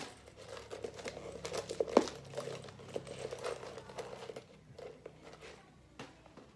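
Hair being gathered and smoothed up by hand close to the microphone: an irregular crackly rustling with one sharper click about two seconds in.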